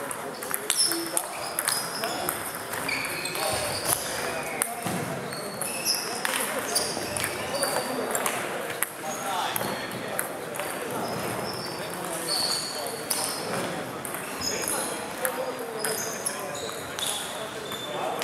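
Table tennis balls clicking off bats and tables: many short, high pings scattered throughout from rallies around the hall, over a steady murmur of voices.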